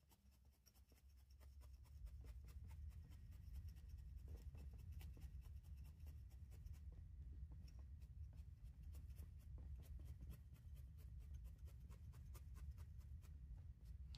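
Barbed felting needle stabbing repeatedly into wool to attach a band of fibre, a faint, quick, steady run of soft pokes over a low room hum.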